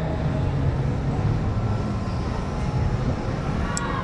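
A low, steady rumble with no clear pitch.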